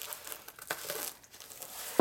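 Plastic wrapping crinkling and rustling as it is handled, with a few brief sharper rustles.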